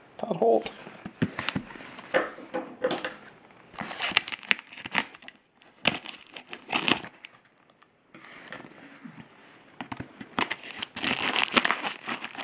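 Kraft paper padded mailer envelope being handled and opened, its paper crinkling and crackling in irregular bursts, with a short pause a little before the end.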